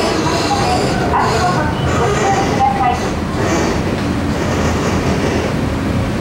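Kobe Electric Railway 1100 series electric train running, heard from inside the passenger car: a steady, dense rumble of wheels on rail and running gear, with a high hiss over it in the first few seconds.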